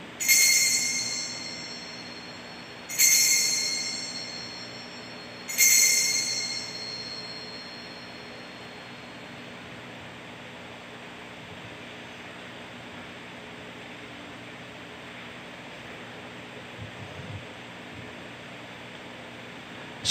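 Altar bell rung three times, about three seconds apart, each ring fading out slowly: the signal for the elevation of the consecrated host at Mass.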